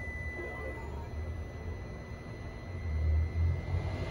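Devia hydrogel screen-protector cutting plotter at work, its motors running as the cutting head travels across the film making the cuts. There is a low, uneven hum that grows louder about three seconds in, over a steady high whine.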